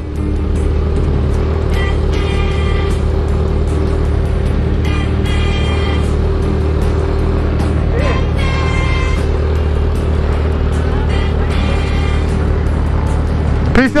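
Sport motorcycle engine idling with a steady low hum, with music playing over it.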